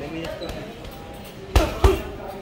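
Two punches from boxing gloves landing on a Venum heavy bag near the end, a pair of heavy thuds about a third of a second apart.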